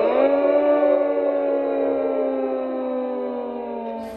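A single person's voice holding one long note that sinks slowly in pitch and fades near the end.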